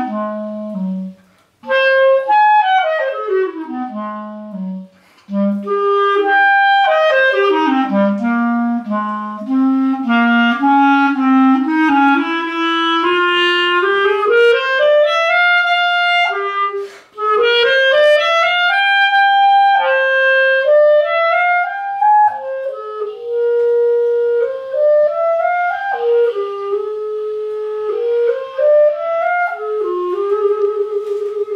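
Solo clarinet playing a fast melodic line: quick descending runs into the low register and rising arpeggios, with brief gaps about a second and a half, five and seventeen seconds in.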